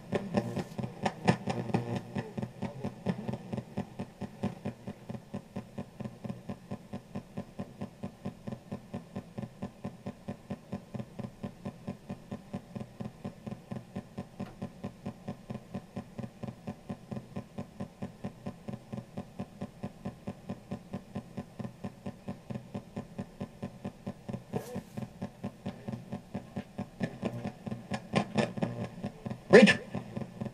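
PSB7 ghost box sweeping rapidly through radio stations, played through a karaoke machine's speaker. It makes a steady chopping rhythm of about four short bursts of static and broken radio sound a second, with one louder burst near the end.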